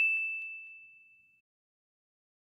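A single high, bell-like ding that rings out and fades away over about a second and a half.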